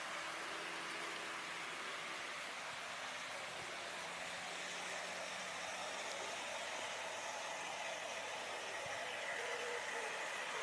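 00 gauge model trains running on a garden layout: a steady, faint hiss and hum of wheels and motors on the track.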